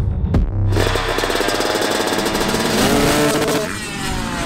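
Motocross bikes on track, several engines running hard with rapid pulsing and revving upward near the end. This follows an abrupt cut about half a second in.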